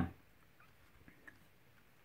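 Faint light clicks and taps as a pair of small speaker enclosures is handled and turned around on a board, over a quiet room.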